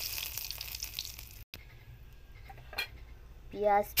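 Bay leaves and whole seeds sizzling in hot oil in a metal wok for a tempering. The sizzle is strong at first and dies down within the first second, then goes on faintly after a brief break.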